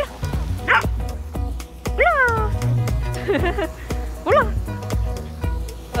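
A Welsh Corgi giving a handful of short, high yips and barks that drop in pitch, with one longer falling call about two seconds in, over background music with a steady beat.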